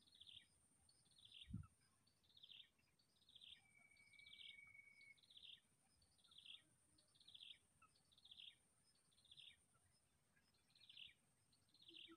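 Faint bird calls, a short falling chirp repeated about three times every two seconds, over a steady high-pitched tone. A single long flat whistle comes in near the middle, and a low thump about a second and a half in.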